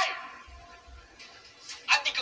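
A man's raised, angry voice in Vietnamese, drama dialogue played back: a loud sharp word right at the start that fades out, a short lull, then the next shouted line beginning near the end.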